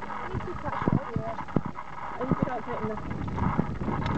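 Light clicks and knocks of metal tent pole sections being handled and fitted together, with wind rumbling on the microphone and quiet talk over it.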